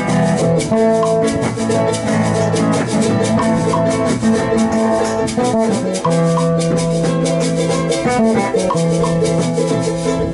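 A small folk band playing: charango and acoustic guitar strummed over steady hand percussion and a drum, with a held melody line above.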